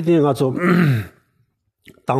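A man speaking in Tibetan, trailing off on a breathy, sighing syllable about half a second in. A pause of under a second follows before he speaks again.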